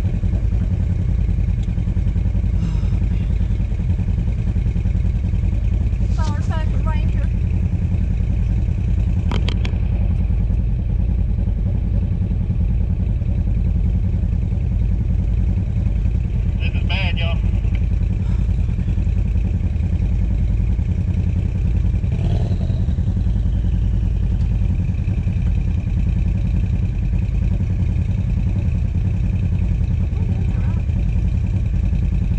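Side-by-side UTV engine running steadily with a low drone, and a single sharp knock about nine and a half seconds in.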